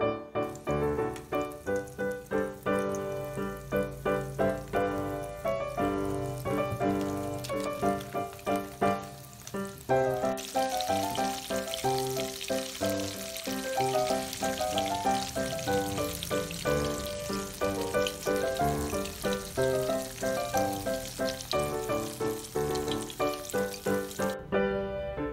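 Background piano music with a steady beat throughout. From about ten seconds in, it is joined by a steady sizzle of battered bananas deep-frying in hot oil.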